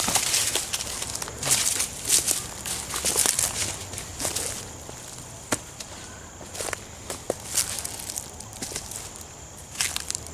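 Footsteps crunching through dry leaf litter and twigs on a forest floor, irregular steps that grow softer and sparser after about five seconds, with a few sharp cracks.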